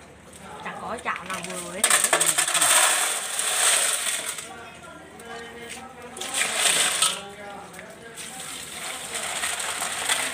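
Snail shells clattering against a metal basin and each other as a basketful of snails is tipped in and stirred by hand in water. It is a dense rattle of many small clicks, loudest about two to four seconds in and again around seven seconds.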